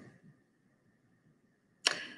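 Near silence, with the fading tail of a short swish at the start and a single brief, sharp noise near the end that dies away within a fraction of a second.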